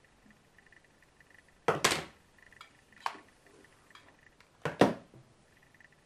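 Hard plastic clatter of a flat iron and comb being handled: two louder clacks, about two and five seconds in, with a few lighter clicks between.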